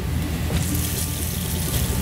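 Sablefish fillet sizzling in oil in a frying pan over a gas flame, a steady hiss that grows louder about half a second in, over a low steady hum.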